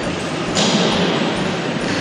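Railway station hall ambience: a steady, echoing hiss and hum with faint distant voices.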